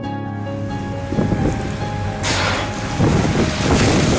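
Water rushing and splashing as an orca surfaces in a burst of spray beside the boat, with wind buffeting the microphone, under background music. The splashing grows from about a second in, with louder bursts about two and three seconds in.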